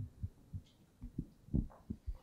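Several soft, low thumps of a handheld microphone being handled and raised toward the mouth.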